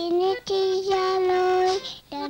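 A small girl singing: a short phrase, then one long held note from about half a second in that breaks off just before the end.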